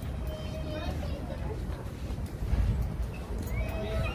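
Voices of people nearby talking, not close to the microphone, over a low rumble on the microphone that swells about halfway through.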